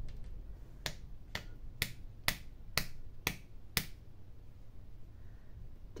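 Seven sharp clicks about half a second apart from a plastic glue bottle being knocked to bring slow-flowing glue down to its nozzle.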